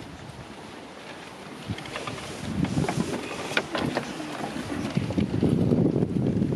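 Wind buffeting an outdoor microphone, with a few sharp clicks and knocks in the middle and the rumble growing louder toward the end.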